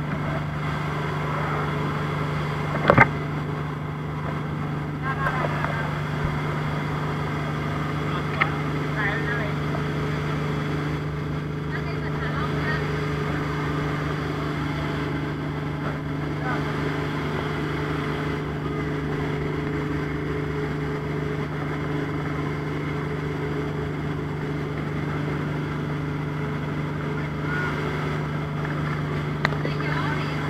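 Passenger speedboat's engine running at a steady pitch under way at speed, with water and wind noise over it. One sharp thump about three seconds in is the loudest moment.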